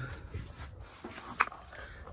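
Faint room tone in a small room, with one short, sharp sound about one and a half seconds in.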